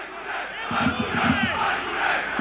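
Football stadium crowd shouting during open play, a mass of voices with a few single shouts rising above it.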